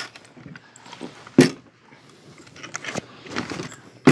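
Handling noises from a Trapper Nelson packboard with a wooden frame, canvas body and leather straps as it is moved about: a sharp knock about a second and a half in, another click near three seconds, then a brief rustle of canvas.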